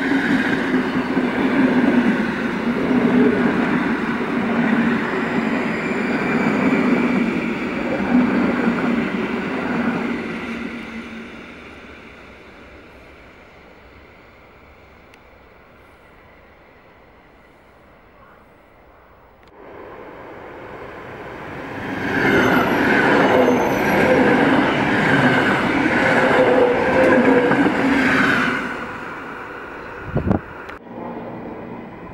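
Electric multiple unit trains of Warsaw's SKM rolling past one after another. The first passes close and loud and fades away about ten seconds in. After a quieter stretch a second one comes in, loud again for about seven seconds.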